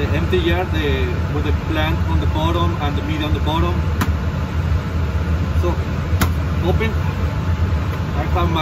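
Steady low hum of a fan or blower, with a voice in the background. Two sharp clicks, about four and six seconds in, come from glass jars and lids being handled.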